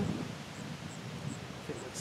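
Low outdoor background noise with a faint, high chirp repeating at a steady pace, about two to three times a second.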